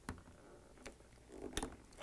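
Plastic wire-harness connector for a refrigerator mullion heater pushed together by hand: a few faint plastic clicks and handling noise, the sharpest about a second and a half in as the plug latches.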